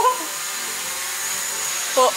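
Small camera drone hovering, its propellers and motors giving a steady, even whine with a high tone.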